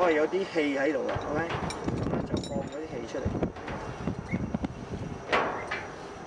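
Climbing rope and metal abseiling hardware being handled, with scattered short clicks and rustles and a sharper rustle about five seconds in. A voice is heard briefly at the start.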